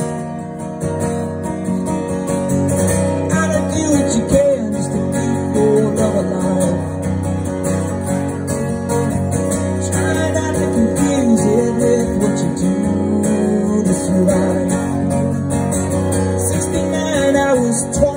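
Acoustic guitar strummed steadily through an instrumental passage of a live song.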